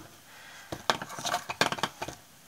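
A quick run of light clicks and taps, about eight in just over a second, starting partway in, as a small stretched canvas is handled and wiped with a paper towel.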